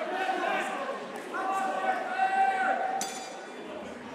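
Men's voices calling out around the ring, then about three seconds in a single sharp metallic ring from the round bell, signalling the start of the round.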